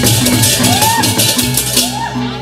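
Balinese gamelan playing: a steady time-keeping stroke about three times a second, like a small gong or cowbell, under a bright, high shimmering wash that breaks off near the end.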